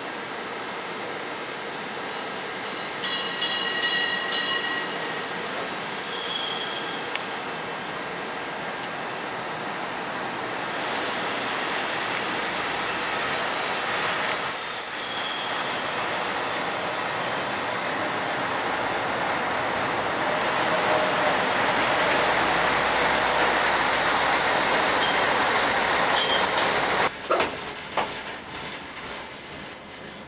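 Dm7 diesel railcar rolling slowly along a station platform track, its wheels and brakes squealing high-pitched twice, loudest a few seconds in and again about halfway, over a steady rumble of running gear. Several sharp clanks come near the end.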